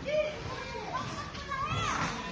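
Children's voices in a large hall: a short high-pitched call right at the start and a longer call that rises and falls near the end, over general chatter.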